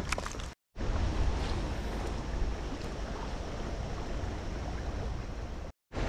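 Steady outdoor rushing noise with a low rumble, with no speech. It breaks off twice into brief dead silence, about half a second in and again near the end.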